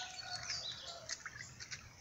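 Faint bird chirps and short calls, scattered through a pause, over a low outdoor background.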